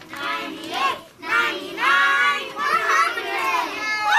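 Young children singing a song together, their high voices rising and falling, with some notes held for about a second.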